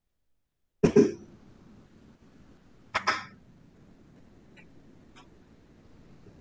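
Two short coughs about two seconds apart, heard over a video call, with a faint steady hiss after them.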